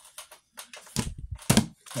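Cardboard LP record jackets being handled and swung aside, rustling, with two sharp knocks about a second and a second and a half in.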